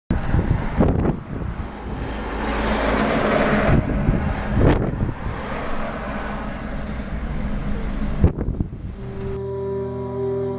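Outdoor rushing noise of wind and road traffic, with a deep rumble and a few sudden gusts striking the microphone. About nine and a half seconds in it cuts off abruptly into slow music with long held notes.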